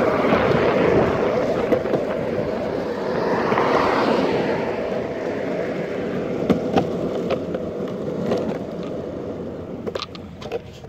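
Skateboard wheels rolling over street asphalt, a steady rolling noise with a few sharp clicks about six and a half seconds in, growing quieter near the end as the board slows.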